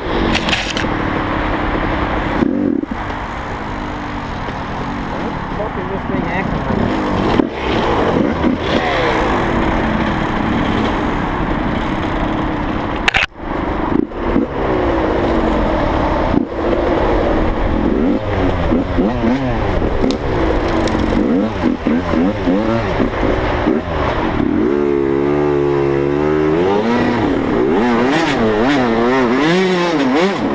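Dirt bike engine revving up and down as it is ridden, its pitch rising and falling with the throttle. The sound cuts out sharply for a moment about 13 seconds in, and the revs hold steadier for a few seconds near the end.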